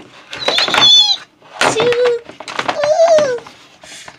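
A child voicing monster roars and screeches for fighting toy Godzilla figures: three drawn-out cries, the first high-pitched, with clacks of the plastic figures knocking together.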